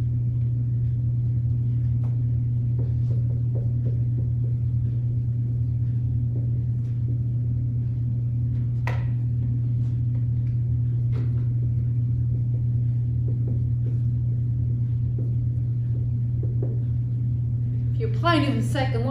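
A steady low hum throughout, with faint scratches and taps of a dry-erase marker writing on a whiteboard, one stroke a little clearer about halfway through.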